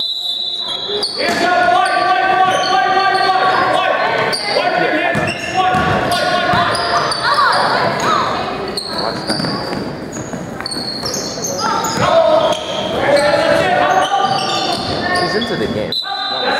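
Basketball game in a gym: a ball bouncing on the hardwood floor with short, high sneaker squeaks, under voices calling and shouting, echoing in the large hall.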